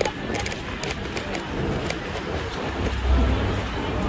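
Street ambience recorded while walking along a busy shopping street, with scattered clicks and a low rumble that swells about three seconds in.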